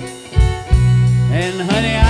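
Live band playing a slow country ballad: a male lead voice singing over a Cajun button accordion, electric bass and drum kit, with a new sung line coming in a little past the middle.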